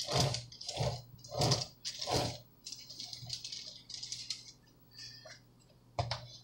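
Cake scraper smoothing the final coat of buttercream around the side of a cake on a turntable: a run of soft scraping strokes about two-thirds of a second apart over the first couple of seconds, then fainter, scattered scrapes.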